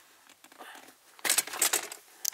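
Plastic centre-console trim and the shift boot being handled and pulled up, a short burst of crinkling and clicking lasting about half a second, a little over a second in.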